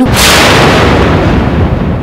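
Dramatic boom sound effect of a TV serial: a sudden loud crash of noise that fades slowly, leaving a low rumble.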